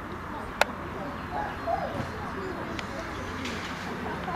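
Open-air field ambience with faint low cooing bird calls in the middle and distant voices. A single sharp crack comes about half a second in, and a fainter tick follows near three seconds.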